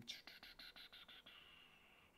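Faint run of about eight quick, light clicks in the first second or so, keys being typed on a computer keyboard, over a breathy exhale that fades away.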